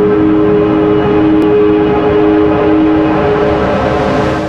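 Loud intro music for a logo animation: a sustained synth chord held steady, with a hissy swell building near the end as it begins to fade out.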